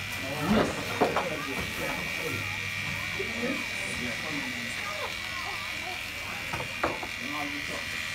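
Electric hair clippers running with a steady buzz as a barber cuts a young boy's hair.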